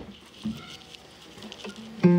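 Quiet handling noise of a player settling with an acoustic guitar just before strumming: soft clicks, taps and rustles, with a louder knock about half a second in and a string faintly sounding near the end.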